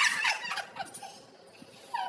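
Women's high-pitched, rapid laughter, fading out within the first second, followed by a short lull.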